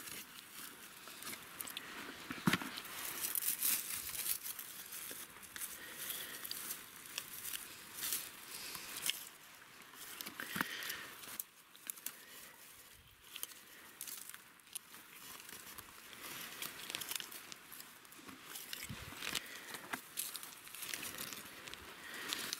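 Dry grass, stems and twigs rustling and crackling as hands push through the undergrowth to pick butter mushrooms, with irregular short snaps and clicks throughout.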